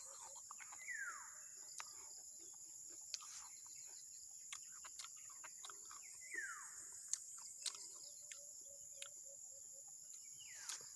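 Steady high-pitched insect drone over a rural background, with a bird giving a falling whistled call twice, about five seconds apart. Scattered faint clicks.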